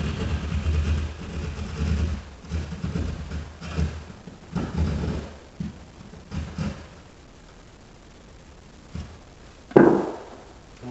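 A hand drywall saw sawing through drywall in short back-and-forth strokes, cutting shallow downward to feel for the edge of a buried plastic electrical box. The strokes stop about seven seconds in, and near the end there is a single loud thump.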